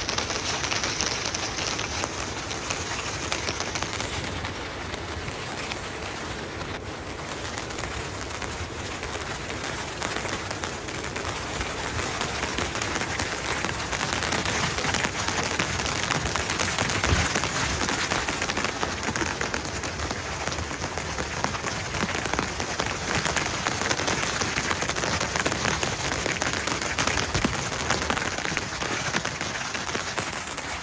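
Steady rain falling as a dense, even hiss of drops, getting a little louder about halfway through, with a few low thumps.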